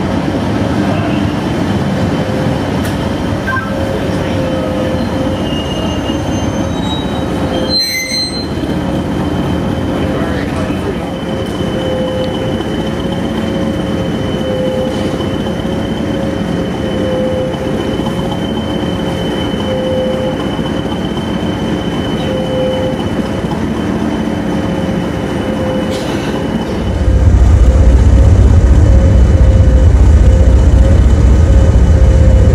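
Hastings diesel-electric multiple unit running into the station, its wheels and brakes squealing with a steady high-pitched tone over the rumble of the train. Near the end the diesel engine rumbles loudly close by.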